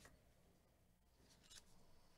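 Near silence, with a faint brief scrape about one and a half seconds in as a gloved hand picks up a stack of trading cards in plastic top loaders.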